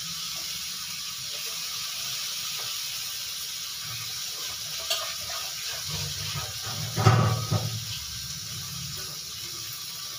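Water running from a kitchen tap into a sink, loudest about six to eight seconds in, over the steady hiss of spices frying in ghee in a kadhai.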